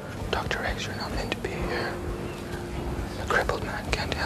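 Whispered speech, hushed voices talking back and forth.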